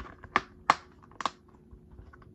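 A plastic DVD case in a cardboard slipcover being handled: a few sharp plastic clicks and taps, three of them louder, spread across about a second.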